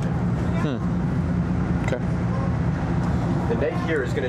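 Steady low rumble of a Washington Metro rail car standing still, its onboard equipment running, with brief voices over it.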